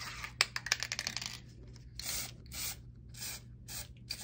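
Royal Talens Cobra odourless satin varnish spray can: a few rattling clicks from shaking the can, then short hissing bursts of spray, about two a second.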